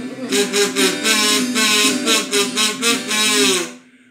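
Harmonica in a neck rack playing a short reedy phrase between sung lines, over strummed acoustic guitar chords; both stop abruptly near the end.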